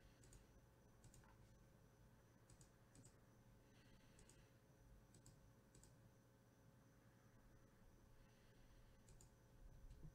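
Near silence: a steady low room hum with faint, scattered clicks, often in quick pairs, about one every second or two, like someone working a computer.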